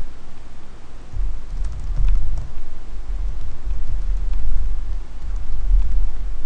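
Computer keyboard typing: scattered light key clicks, over an uneven low rumble.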